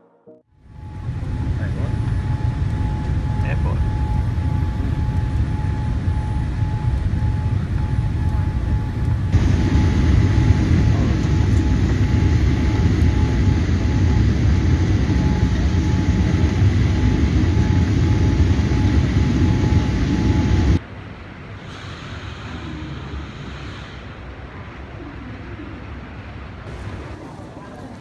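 Jet airliner cabin noise, a Boeing 787: a loud steady rumble of engines and rushing air with a faint steady whine. It gets louder about nine seconds in as the plane comes in low over the airport, then cuts off abruptly about twenty seconds in to a much quieter background hum.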